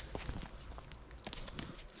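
Faint footsteps crunching in thin snow, heard as scattered irregular soft clicks.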